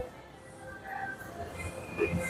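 Quiet convenience-store ambience: a faint, steady low hum with a few faint steady tones coming in about a second in.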